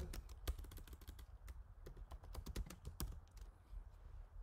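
Computer keyboard typing: a faint, irregular run of keystrokes as a word is typed.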